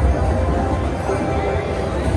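Mayan Mask slot machine playing its bonus music and jingle as the free-spin feature awards three extra spins, over the steady chatter and hum of a casino floor.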